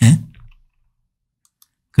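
A brief voiced murmur at the start, then a nearly silent pause broken by a few faint computer mouse clicks, the last about one and a half seconds in.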